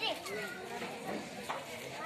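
Background chatter of a crowd with children's high voices calling out and playing.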